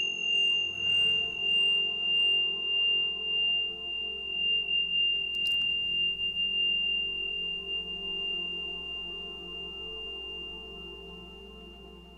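A struck high metallic chime gives one clear, high ringing tone that wavers gently and slowly fades away, over a low steady drone.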